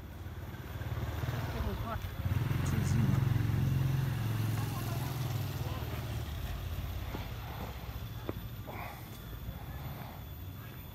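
A motor vehicle's low engine rumble swells over the first few seconds and slowly fades, with people's voices in the background.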